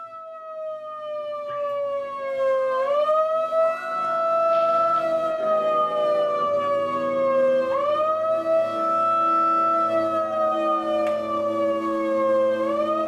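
A siren-like wailing tone opens a live rock band's set. It fades in, slides slowly down in pitch and quickly back up, about every five seconds. A low steady drone joins about halfway through.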